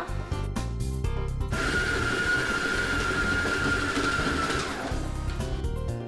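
Oster stand mixer motor running steadily for about three seconds in the middle, with a steady whine that sinks slightly in pitch as it works a heavy panettone dough. Background music plays throughout.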